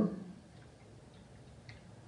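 The end of a spoken word, then quiet room tone with a low hum and a few faint ticks, the clearest near the end.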